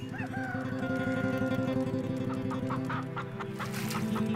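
Chicken sound effect over a soft steady music bed: one long drawn-out call with a rising start in the first couple of seconds, then a quick run of short clucks in the second half.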